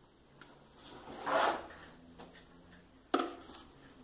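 A contact-paper-covered wooden cabinet door being handled and turned over: a rubbing swish about a second in and a sharp knock just after three seconds.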